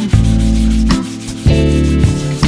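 Hand sanding of plywood with a sanding block, rubbing back and forth over the routed surface. Strummed guitar music plays throughout.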